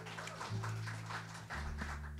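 Upright bass playing a few low held notes, changing pitch about once a second.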